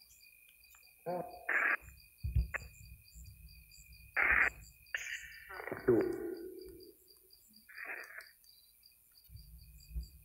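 Necrophonic spirit-box app on a phone scanning and playing back choppy fragments: short bursts of voice-like sound and noise, each a second or less, separated by gaps. Under them runs a faint steady high tone and a regular high chirping about four times a second.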